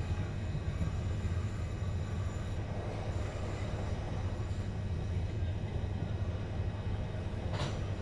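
Interior running noise of a Class 376 Electrostar electric multiple unit in motion: a steady low rumble of wheels on track with a faint high whine, and a short knock about seven and a half seconds in.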